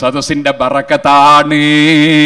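A man's voice intoning in a chanting style: short sung phrases, then long held notes through the second half.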